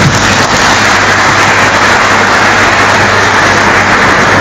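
Audience applauding, a dense steady clapping.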